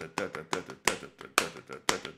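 Sharp hand claps or slaps in a quick, uneven rhythm, about four a second, with a man's voice sounding between them.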